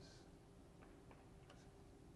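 Near silence: a faint steady hum of room tone, with a few faint, irregular clicks about a second in.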